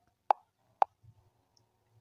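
Two fingertip taps on a smartphone touchscreen, picked up by the phone's own built-in microphone as two short, sharp pops about half a second apart.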